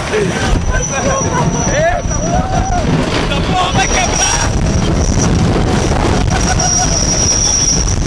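Riders yelling and whooping on a wooden roller coaster as it goes over the top and down, over the steady rumble of the train and heavy wind on the microphone. A thin, high, steady squeal grows louder near the end.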